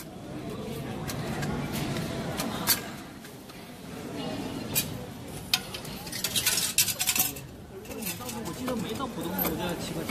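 Shanghai Metro ticket vending machine working through a cash payment: a few separate clicks, then a quick run of metallic clinks from the machine about six to seven seconds in, as it dispenses into its tray.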